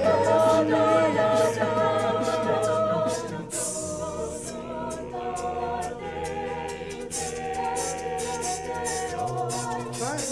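A cappella vocal group singing: a lead voice over held backing harmonies and a low sung bass line, with no instruments. It gets softer about three seconds in.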